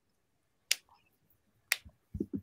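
Two short, sharp clicks about a second apart.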